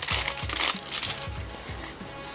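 Thin clear plastic wrap crinkling and crackling as it is peeled off a small cardboard toy box, busiest in the first second and thinning out after that.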